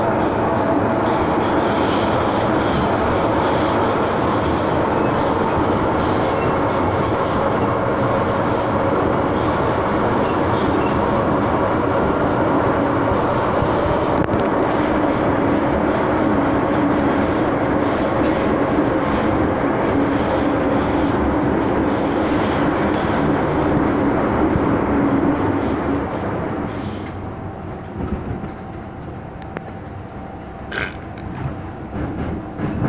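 Cabin sound of a Hong Kong MTR M-Train metro car running between stations: a steady loud rumble of wheels on rail and running gear, with a faint high whine for a few seconds in the first half. The noise falls off and grows quieter about 26 seconds in.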